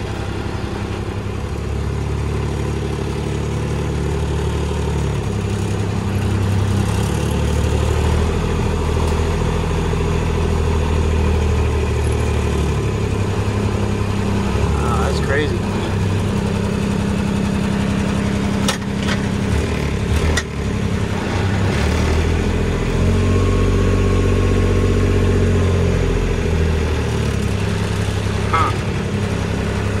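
Kubota utility vehicle's engine running steadily under load as it pulls on a winch cable to drag a hung-up tree, its pitch shifting a few times, with a few sharp knocks in the middle.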